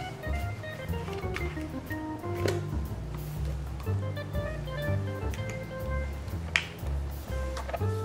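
Background music: an instrumental track with held bass notes that change every second or so under a lighter melody.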